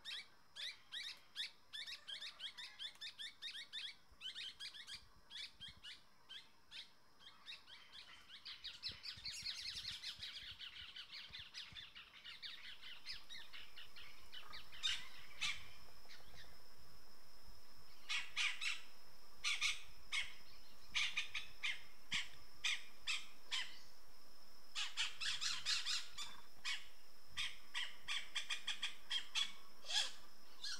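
Wild birds calling in rapid series of sharp chirps and squawks, with a dense chattering spell about a third of the way in. From about halfway a steady high-pitched drone sets in under further bursts of calls.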